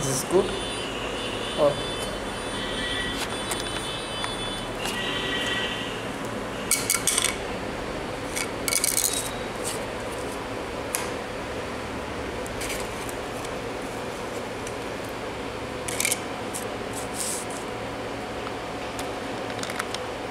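Hard 3D-printed plastic pieces handled and set down on a 3D printer's metal bed: a few scattered light clicks and rattles over a steady background hum.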